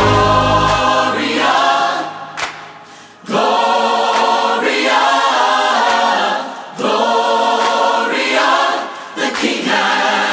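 Choir singing "Gloria, gloria, gloria, the King has come" in phrases, with almost no bass beneath after the first half second. The voices fall away briefly about two to three seconds in, and again shortly before the end.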